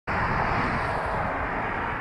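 A steady rushing noise that eases slightly toward the end.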